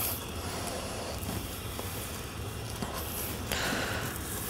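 Steady sizzling of portobello mushroom halves and corn on a hot gas grill, with a low hum underneath; the hiss brightens for a moment near the end.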